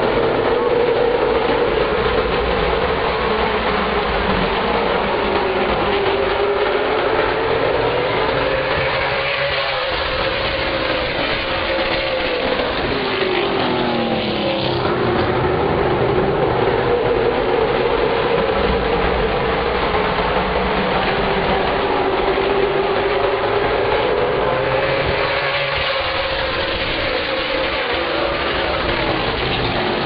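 Pack of stock cars' V8 engines running continuously around a short oval, the engine pitch rising and falling as the field comes around and passes, about twice.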